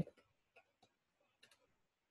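A few faint, short clicks at irregular spacing over near silence.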